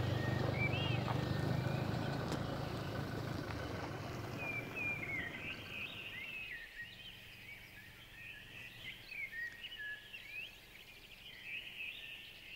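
An SUV driving away, its low engine drone fading out over the first six seconds or so, while small birds chirp and call throughout.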